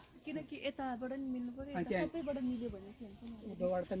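A person talking throughout, over a steady high drone of insects.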